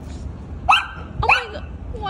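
Small white fluffy dog barking twice: two short, high-pitched yaps a little over half a second apart.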